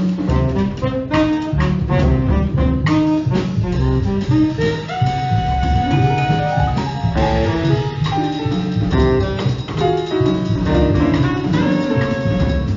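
Jazz quartet playing live: a tenor saxophone holding and bending long notes over upright bass, drum kit and piano.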